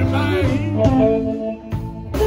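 Live electric blues band playing: electric guitars and bass, with a lead melody that bends in pitch during the first second.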